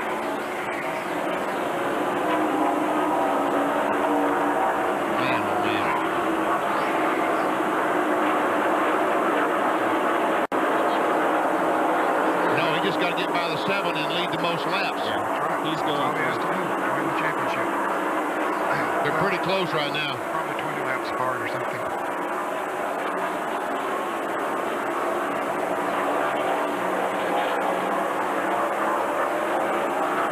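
Live trackside sound of NASCAR Winston Cup stock cars' V8 engines running at racing speed around the oval, a steady drone of several cars with the crowd's noise beneath it.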